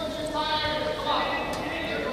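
Many footballs being dribbled at once on indoor artificial turf: repeated light ball touches and running footsteps, with voices calling in the hall.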